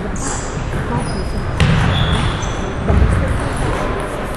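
Reverberant sports-hall ambience at a table tennis tournament, with indistinct background voices. A sharp click comes about one and a half seconds in, with dull thumps at that point and again about three seconds in, and a few short high squeaks.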